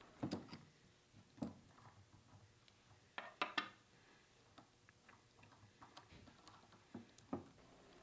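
Faint, scattered metallic clicks and ticks of a Torx driver, helped by a wrench on its hex, loosening the screw that holds a carbide insert on a face mill: a few single clicks, a short cluster in the middle and two more near the end.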